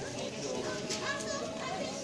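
Indistinct voices of shoppers and stallholders talking over one another at a street market stall, no words clearly picked out.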